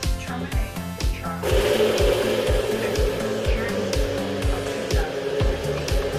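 Music with a steady kick-drum beat, about two a second, and a stepping bass line. About a second and a half in, a loud, dense buzzing layer joins and holds steady.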